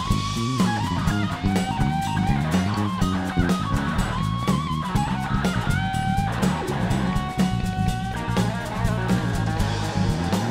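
Live blues band: an electric guitar plays a lead solo of long, held, bent single notes over bass guitar and drums.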